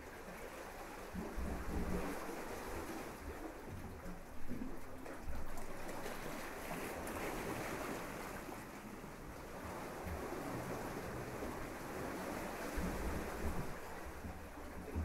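Small waves washing onto a sandy beach in slow swells, with gusts of wind rumbling on the microphone.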